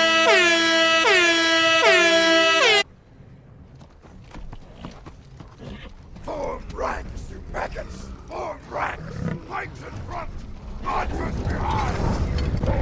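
A loud run of about four air-horn blasts in quick succession, each ending in a falling pitch, which cuts off about three seconds in. It gives way to quieter battle noise of scattered shouts and growls that swells again near the end.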